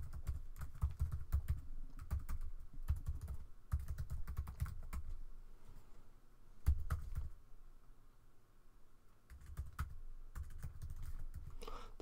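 Typing on a computer keyboard: irregular runs of keystroke clicks, with a heavier stroke and then a pause of nearly two seconds about two-thirds of the way through before the typing resumes.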